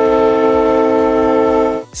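Diesel locomotive air horn sounding one long, steady chord of several notes, cutting off near the end.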